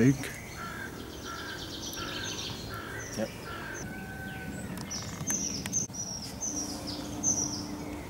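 Wild songbirds calling in woodland: a run of about five short, evenly spaced notes in the first half, then other higher-pitched calls.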